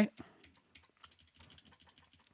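Computer keyboard being typed on: a scattering of faint, irregular key clicks as a short terminal command is typed and entered.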